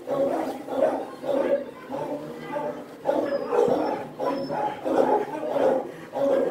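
A large dog vocalising in a steady run of short, low grumbling calls, a little more than one a second.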